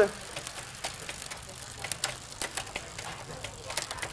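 Shimano Tiagra 10-speed bicycle drivetrain turning on a stand: the chain runs over the spinning rear cassette with irregular light clicks and ticks as the rear derailleur shifts down the cassette, running smoothly.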